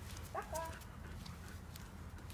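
Light steps of a person and a dog on asphalt: soft scattered clicks. A short call in a high voice comes about half a second in.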